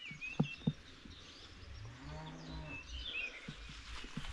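A cow mooing once: a single drawn-out moo of about a second, midway through. Small birds chirp before and after it.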